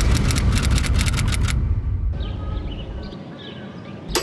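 Editing sound effect for an on-screen caption: a low rumbling drone under a fast run of typewriter-like clicks, which stops about a second and a half in. After that comes a quieter, fading background with faint short chirps.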